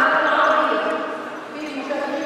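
A woman speaking Arabic into a lectern microphone, her voice amplified over the hall's sound system.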